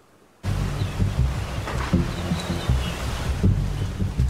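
Hurricane wind buffeting the microphone over rushing storm-surge water, cutting in suddenly about half a second in.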